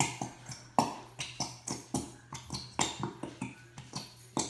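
Plastic glue bottles being squeezed, the glue sputtering and popping out of the nozzles in a quick string of short sharp pops and clicks, about four a second.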